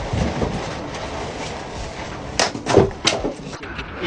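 An axe splitting firewood on a chopping block: a sharp crack a little past halfway, followed quickly by two more knocks.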